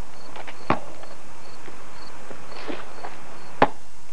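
Two sharp knocks of a basketball on a driveway hoop: a light one about three-quarters of a second in and a louder one near the end, over steady hiss.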